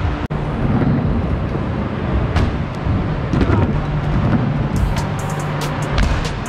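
Scooter wheels rolling across skatepark ramps: a steady low rumble. A run of quick light ticks comes in during the last second or so.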